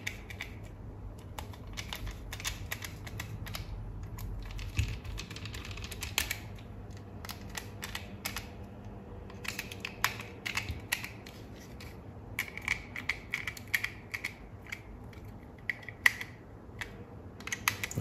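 A small screwdriver turning screws into the plastic housing of a Braun Series 5 electric shaver: many irregular small clicks and ticks, with scraping stretches about two-thirds of the way through.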